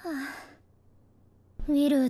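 A short, breathy voiced sigh that falls in pitch, lasting about half a second, then near silence before a voice starts speaking near the end.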